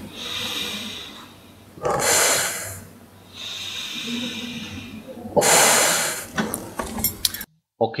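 A man breathing in through his nose and out through his mouth into the mouthpiece of a Mares Horizon semi-closed rebreather, pressurising the breathing loop to test its overpressure valve. Two loud exhales, about two seconds and five and a half seconds in, with quieter in-breaths between and a few faint clicks near the end.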